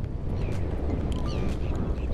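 Steady low rumble of wind on the microphone in open marsh, with a few faint, short high calls.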